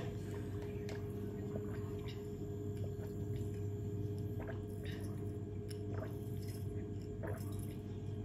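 Faint sipping and swallowing as a thick drink is sucked up through a plastic straw from a lidded cup, with small wet clicks scattered throughout. A steady low hum runs underneath.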